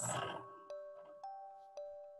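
Quiet background music of bell-like notes: three are struck about half a second apart in the second half, each ringing on as a steady tone.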